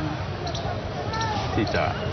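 A man speaking Thai in slow, broken phrases with a pause between them, over a steady low background hum.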